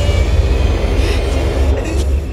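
Horror score sound design: a loud, steady low rumbling drone with a dense grinding rattle above it.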